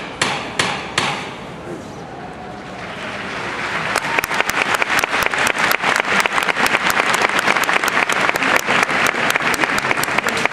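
Three sharp knocks in quick succession in the first second: the capataz striking the paso's llamador, the signal for the costaleros to lift the float. Crowd applause builds from about three seconds in and stays loud, with many sharp claps.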